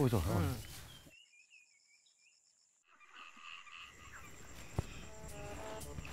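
A short voiced exclamation, then near silence, then crickets chirping, with soft background music coming in about five seconds in.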